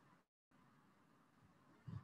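Near silence: faint room tone on a web-class microphone, with one brief low sound just before the end.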